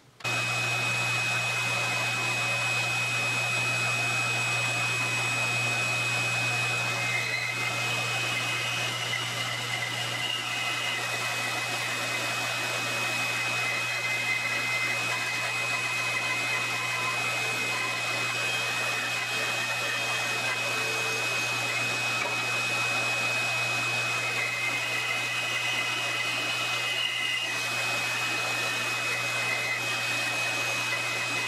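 Bandsaw running and cutting through a quilted maple neck blank: a steady motor hum with a thin high whine over the rasp of the blade. It comes in suddenly and holds steady.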